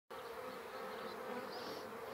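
Honeybees buzzing: a faint, steady hum.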